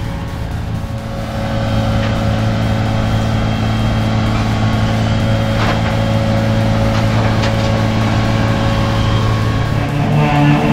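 Tow truck's engine running steadily and getting louder about a second and a half in as its hydraulics work to unload a car, with a couple of short metal clanks partway through.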